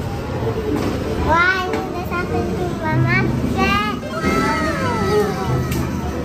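Young children's high-pitched voices, with background music underneath.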